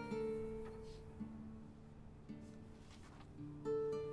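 Soft background music: slow plucked guitar notes, a new one about every second, each left to ring and fade.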